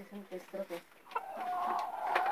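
Domestic hen clucking softly in short notes, then giving one long drawn-out call about a second in.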